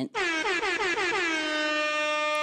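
An edited-in horn sound effect: one long blast that slides down in pitch over its first second and then holds a steady note.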